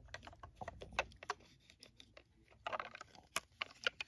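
Light, irregular clicks and taps of a plastic toy fire truck being handled in the hand and turned over, its plastic body and wheels knocking under the fingers.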